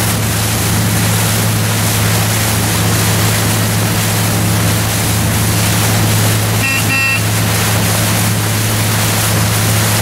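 A boat engine running with a steady low hum, under wind and water wash. About seven seconds in, a brief high-pitched double tone sounds.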